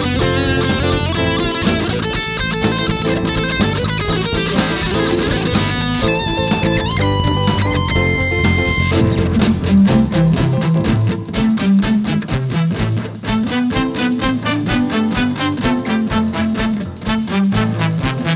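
Electric guitar solo played live over bass guitar and a steady beat, quick runs of notes ending in a held high note about nine seconds in. After that the bass line and beat carry on without the lead.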